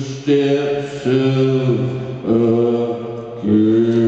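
Live indie rock band playing a slow, droning passage: a low, chant-like sung vocal held over sustained notes, the pitch shifting about every second.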